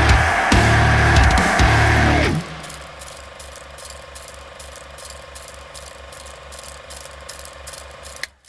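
Heavy djent metal band with distorted guitars and drums, cut off abruptly about two seconds in. A much quieter mechanical ticking follows, about four ticks a second, over a low steady hum.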